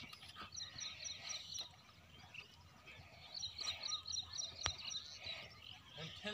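Rapid high-pitched chirping from a small animal, about five chirps a second, in two runs, with one sharp click near the end.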